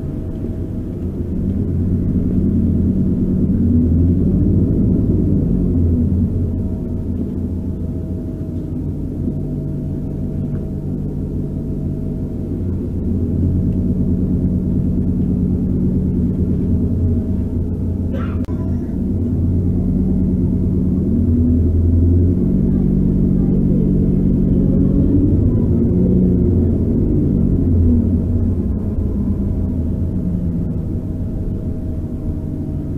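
A bus engine and drivetrain heard from inside the passenger saloon while the bus drives, the engine note rising and falling several times as it speeds up and slows, over a steady whine. A short sharp sound about eighteen seconds in.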